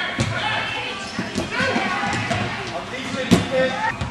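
Futsal ball being kicked and struck on an indoor court, with one sharp, loud kick a little after three seconds in and a smaller one near the start. Voices of players and spectators call out throughout.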